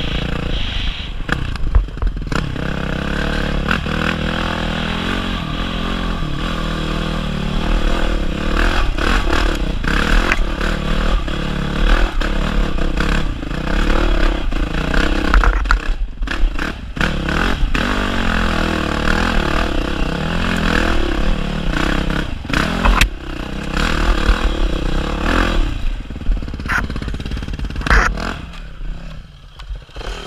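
Yamaha dirt bike's single-cylinder engine revving up and down as it is ridden over a rough, rocky trail, with clatter and knocks from the bike over the bumps. Near the end the engine drops back as the bike slows to a stop.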